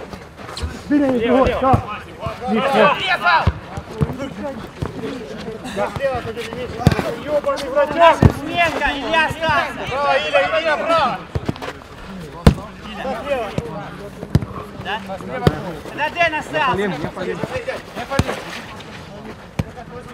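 A football being kicked: several separate sharp thuds of boot on ball, the loudest about twelve seconds in, with players' voices calling out across the pitch.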